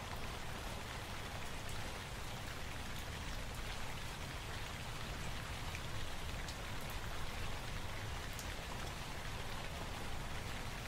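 Steady rain: a continuous hiss with scattered sharp drop ticks, a rain field recording within an ambient electronic track.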